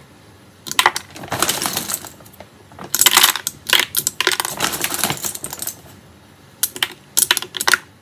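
Hard cocoa butter wafers dropped by hand into a plastic measuring jug, clicking and clattering against each other and the plastic in three bursts of rapid clicks.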